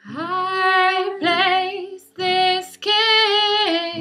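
Female voice singing four held notes in a row, the second with a wavering vibrato, with the acoustic guitar dropped out.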